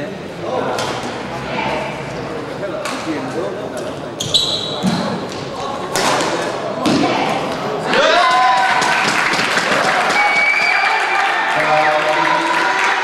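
Badminton rally in an indoor hall: about five sharp racket strikes on the shuttlecock a second or two apart, with a shoe squeak on the court, over background crowd chatter. About eight seconds in the crowd's voices grow louder, shouting and cheering.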